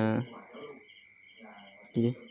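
Faint insect chirping, short regular pulses about three a second, over a steady high whine. A man's voice ends just after the start, and a brief loud sound comes at the very end.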